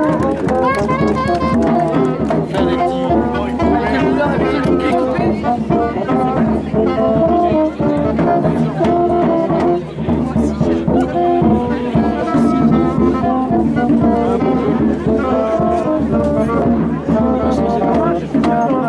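Music played on brass instruments: a melody of held notes that keeps changing, with voices beneath it.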